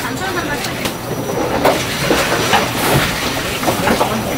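Large kitchen knife slicing boiled pork on a wooden cutting board, knocking against the board several times at uneven intervals, over a busy background of voices.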